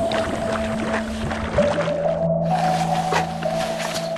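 Background music with long sustained notes, over light splashing of water as hands rinse vegetable stalks.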